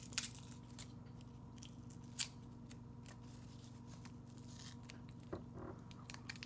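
Handling and chewing of a pastry wrapped in paper: faint crinkles and small mouth clicks, with a sharper click about two seconds in and a brief murmur near the end, over a steady low hum.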